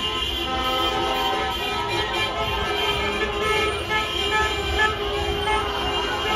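Many car horns honking at once in celebration, long overlapping toots over a crowd's shouting and the low rumble of slow-moving traffic.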